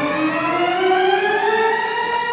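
A late-Romantic opera recording playing a sustained note, with its full overtones, that slides steadily upward in pitch across the two seconds.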